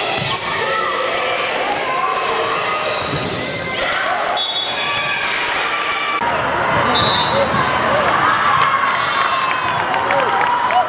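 Live indoor volleyball match sound in a gym: sharp knocks of the ball being played, with players calling out and spectators' voices in the echoing hall. About six seconds in, the sound changes abruptly to another match with denser crowd chatter.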